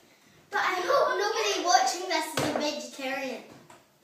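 A child talking in a small room, the words unclear, from about half a second in until shortly before the end.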